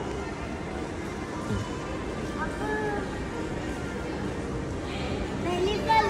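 Shopping-mall ambience: a steady wash of background music and distant voices, with a few faint snatches of voices about halfway through and again near the end.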